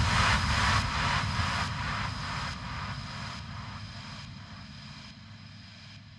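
Fading tail of a trance track: a hissing noise wash over a low rumble, pulsing just over once a second, its top end dimming step by step as it fades out.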